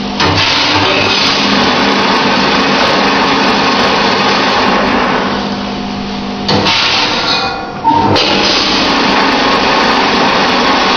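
Grain packing machine (weigh-filler) running: its feeder motor hums steadily over a continuous rush of grain pouring from the hopper spout into a bag. The sound changes abruptly about six and a half seconds in, fades, and comes back in full near eight seconds in.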